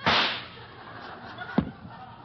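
A radio sound-effect gunshot: a sharp crack with a short fading noisy tail. About one and a half seconds later comes a single thud, the sound effect of the rabbit dropping.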